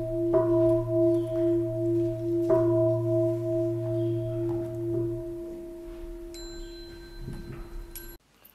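A singing bowl struck twice, about half a second in and again about two and a half seconds in, ringing with a steady, wavering tone that slowly fades.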